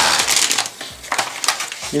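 Crinkling of a plastic sprue bag and rustling of the paper instruction booklet as a model kit's contents are handled in its cardboard box, loudest in the first half second, then lighter rustles.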